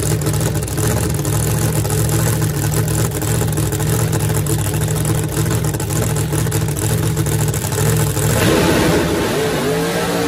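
A no-prep Chevy Nova drag car's race engine running loud and steady at the line, then launching about eight seconds in, its pitch climbing as it accelerates away down the track.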